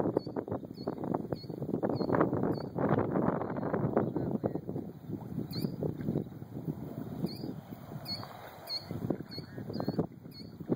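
Wind gusting over the microphone above choppy lake water, an uneven rushing that swells and eases. A small bird chirps over and over in short high notes, most often in the second half.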